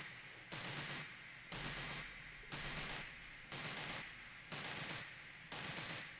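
Looping electronic pattern from a Maschine MK3 groovebox: a noisy, hissy hit with a low hum under it, repeating about once a second, each hit lasting about half a second.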